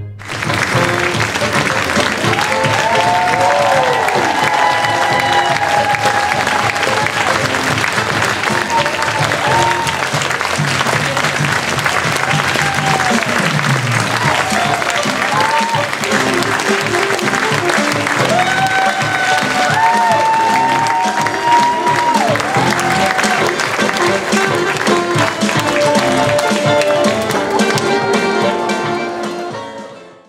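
A theatre audience applauding a curtain call, with whoops and calls rising and falling over the clapping, and music underneath. The applause starts suddenly and keeps an even level throughout.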